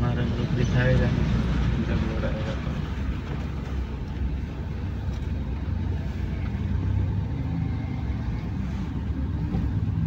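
Steady low rumble of a car's engine and tyres on a muddy, unpaved road, heard from inside the moving car's cabin.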